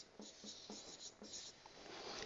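Faint strokes of a marker pen writing on a whiteboard: a handful of short, quiet scratches.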